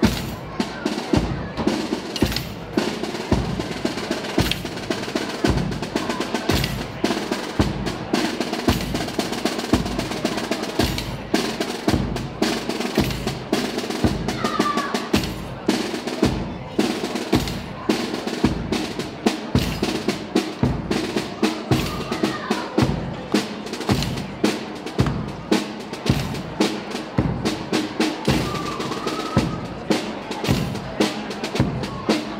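Procession drums beating a steady, slow march, snare rolls over deep drum strokes, with the sustained tones of a band underneath.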